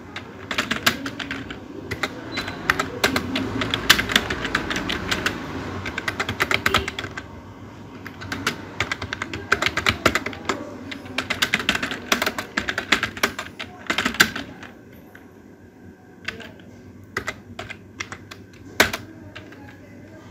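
Computer keyboard typing in fast runs of keystrokes, with a short pause about seven seconds in. Only scattered keystrokes follow in the last few seconds.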